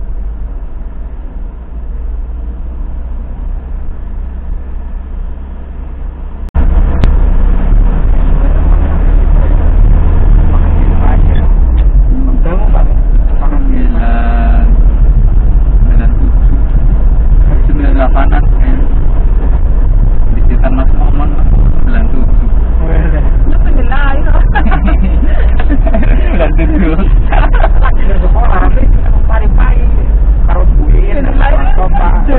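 Ambulance engine and road rumble inside the cab, which jumps sharply louder about six and a half seconds in, with indistinct voices talking over it for the second half.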